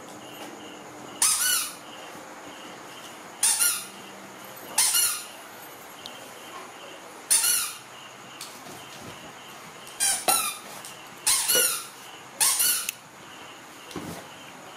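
Baby macaque giving short, high-pitched squealing calls, about eight in all, each lasting under half a second, with a wavering pitch.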